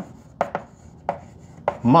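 Chalk tapping and scraping on a blackboard as words are written by hand: a quick series of sharp taps, about six in two seconds.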